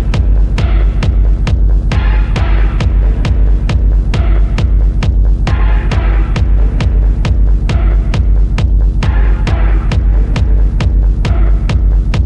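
Dark techno playing loud: a steady four-on-the-floor kick at about two beats a second over a deep, droning bass. A brighter synth layer swells in and out every few seconds.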